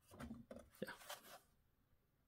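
Near silence, with a few faint handling sounds in the first second and a half as a plastic pistol-grip RC transmitter is taken from a shelf.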